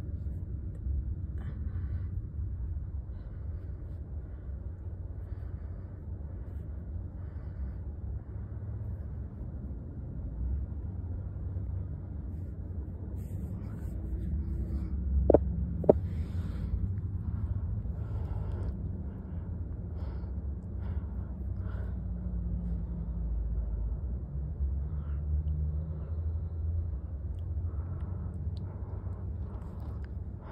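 Steady low rumble of a car idling, heard inside its cabin. Two sharp clicks about halfway through.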